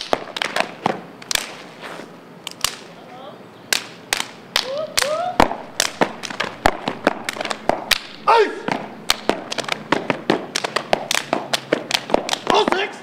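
Step routine: boots stomping and hands clapping and slapping on the body in fast, irregular rhythmic patterns. Short rising shouted calls come in twice, around the middle and again about two-thirds through.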